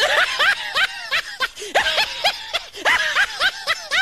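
A person laughing hard in quick, high-pitched "ha" bursts, in three runs with brief breaks between them.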